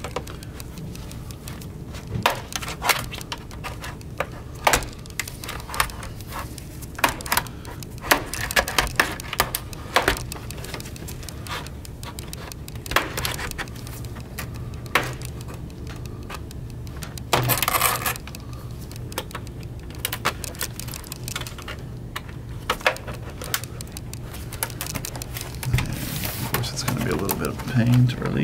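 Plastic snap clips of a laptop's bottom panel clicking and popping as a plastic guitar-pick pry tool is worked around the panel's edge, with many short sharp clicks and a longer, louder crackle about two-thirds of the way in.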